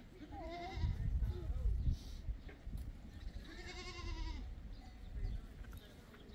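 A goat bleating twice: two long, wavering calls, about half a second in and again about four seconds in, over a low rumble.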